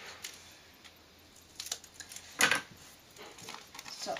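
Scissors snipping through a clear plastic binder card-protector sheet: a few separate sharp cuts and clicks, the loudest a little past halfway.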